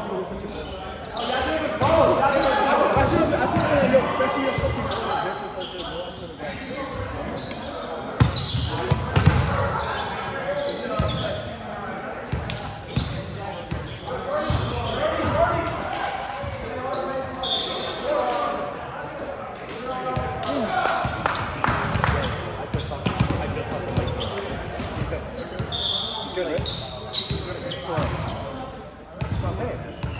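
Indistinct chatter of players in a large gym hall, with occasional thuds of a ball bouncing on the hardwood floor.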